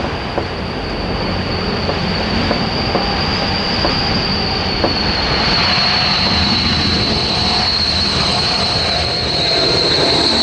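Vickers Viscount's four Rolls-Royce Dart turboprop engines on landing approach, a steady high-pitched whine over a broad engine rush that dips slightly in pitch partway through and grows louder as the airliner comes closer.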